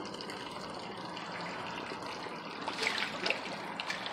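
Steady splashing trickle of water sprayed from a clip-on aerator pump into a plastic barrel of water, with a few small splashes from a dip net moving through the water about three seconds in.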